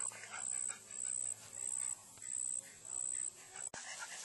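An elderly dog whimpering faintly, against a high-pitched chirp pulsing a little under twice a second that stops abruptly near the end.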